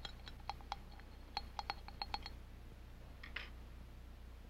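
A stirring rod clinking and tapping against a small glass beaker while dry powders are stirred: about ten sharp, ringing clinks in the first two seconds, then one brief scrape a little after three seconds.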